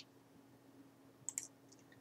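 Near silence, with a faint click at the start and a quick pair of clicks a little past halfway: computer mouse clicks.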